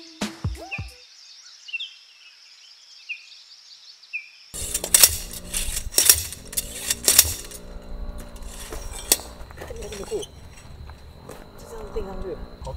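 Background music ends within the first second, followed by quiet outdoor ambience with a high hiss and a few short chirps. About four and a half seconds in, it cuts to camp-gear handling: clinks and knocks, a thin steady high tone, and brief voices near the end.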